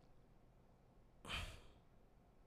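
Near silence, broken once, about a second and a half in, by a single short breath from a man speaking close to the microphone.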